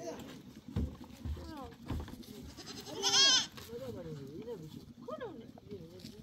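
Goats bleating several times, the loudest a long wavering bleat about three seconds in. A few dull thumps come in the first two seconds.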